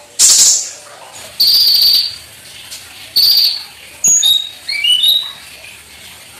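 Caged kolibri ninja sunbird: a brief flutter of wings near the start as it hops perches, then two short, harsh, buzzy high trills and a quick run of sharp chirping notes.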